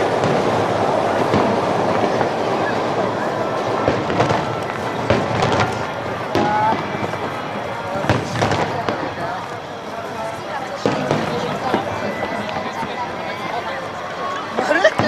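Aerial firework shells bursting: a series of sharp bangs at irregular intervals over a continuous background of many people talking.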